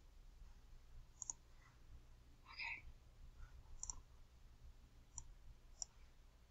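Near silence with a handful of faint, separate computer mouse clicks spread across the few seconds.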